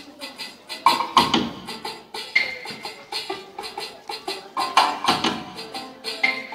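Recorded Chinese-style music played over loudspeakers to accompany a dance: a fast clacking wood-block beat under a melody, with heavier drum hits about a second in and again near five seconds.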